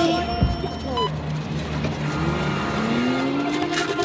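Car engine sound effect from the music video's soundtrack, running and revving, its pitch rising over the last two seconds.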